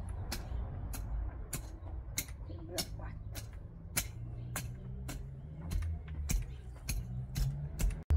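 A metal fan rake's tines scraping and clicking through loose, stony garden soil, in short strokes about two a second.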